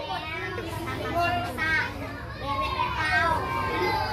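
A classroom full of children chattering and calling out at once, many high voices overlapping.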